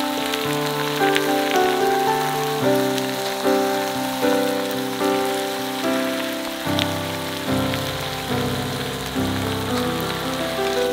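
Octopus and vegetables sizzling steadily in a hot frying pan, a fine hiss under background music, a melody of notes that changes about every half second.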